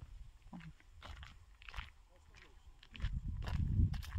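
Footsteps of a person walking outdoors, sounding as short separate steps. In the last second a louder low rumble builds up, like wind or handling noise on the microphone.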